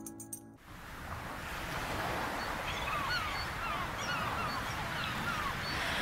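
Ocean surf washing in a steady rush that builds up after the first half second, with a string of about eight or nine seagull calls through the middle.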